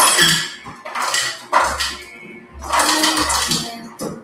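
Ice and glassware clinking and clattering in three or four irregular bursts, with a few dull knocks of things being set down.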